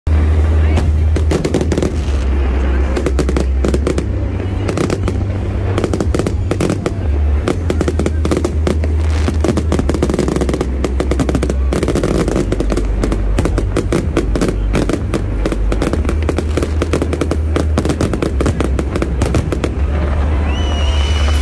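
Aerial fireworks going off in a dense, continuous barrage: rapid bangs and crackles with no break, over a constant low rumble.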